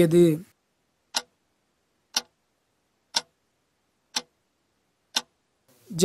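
Clock-tick countdown sound effect: five short, sharp ticks, one each second, timing the pause to answer a quiz question.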